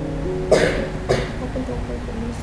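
Background music with held notes, and a person coughing twice, about half a second and about a second in.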